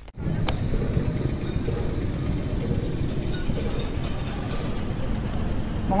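Wind rushing over an action camera's microphone on a moving road bike, heard as a steady low rumble, with tyre and road noise beneath it.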